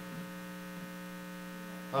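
Steady electrical mains hum with a row of overtones, carried in the audio feed while the speaker's microphone is not picking up.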